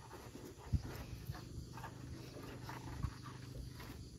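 A cow snuffling and breathing at close range as it noses at the dirt, with a soft knock about a second in and another about three seconds in.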